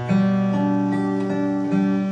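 Acoustic guitar tuned to DADGAD: a chord struck and left to ring, with a low note plucked again near the end.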